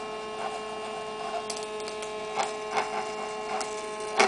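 Single-magnet Bedini-style pulse motor running steadily under load, lighting 20 LEDs in series from its harvesting coil. It gives a constant electrical hum with one clear mid-pitched tone and higher overtones, and a few light clicks break in.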